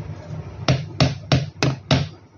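Plastic toy revolver clicking five times as it is dry-fired, about three sharp clicks a second, over a faint low hum.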